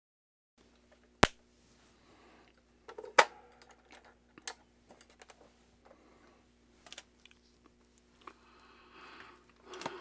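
Scattered sharp clicks and light knocks of small hand tools and parts being handled on a workbench, the two loudest about a second and three seconds in, over a faint steady hum.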